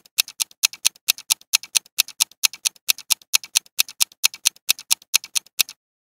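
Countdown-timer ticking sound effect: a rapid, even run of clock-like ticks, about four to five a second, stopping shortly before the end.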